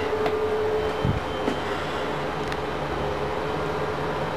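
Steady hum of elevator machine-room equipment, with one constant mid-pitched tone over a low drone. A dull thump comes about a second in, and a few light clicks follow.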